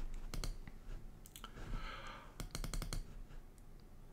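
Faint clicking at a desk computer: a couple of clicks early, then a quick run of about half a dozen clicks a little past halfway.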